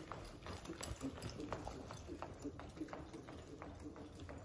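Horse's hoofbeats in soft arena dirt at a lope, a quick run of muffled thuds a few to the second, loudest about a second in as the horse passes close, then fading as it moves away.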